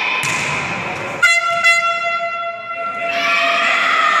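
A loud horn blast starts suddenly about a second in and holds one steady note for nearly two seconds, over the noise of a sports-hall crowd.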